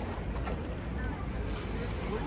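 Steady low rumble and wind buffeting the microphone on the open upper deck of a tour bus, with faint chatter of other passengers.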